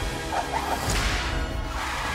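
A single sharp whip crack just before a second in, over trailer music.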